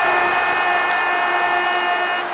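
Football stadium crowd noise just after a home goal, with one steady horn-like note held over it that cuts off just after the two seconds.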